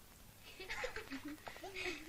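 Faint giggling and snickering from schoolchildren in a classroom, starting about half a second in: short, wavering bursts of quiet laughter.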